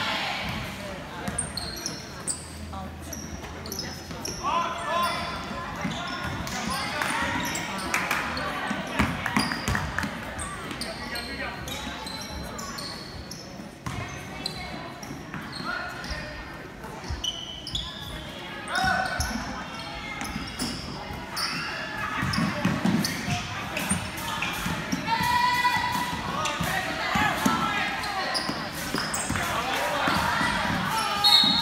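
Youth basketball game in an echoing gym: a basketball bouncing on the hardwood court and short sneaker squeaks. Players and spectators call out throughout.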